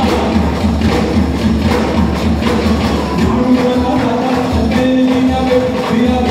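Live Garba folk music played loud through the hall's speakers by a band: held melody notes over a steady, fast percussion beat.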